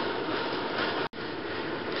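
Steady background hiss with no speech. It breaks off in a brief dropout about a second in, where the recording is cut, then carries on unchanged.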